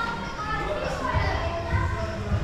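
Chatter of visitors, children's voices among them, with a couple of low bumps in the second half.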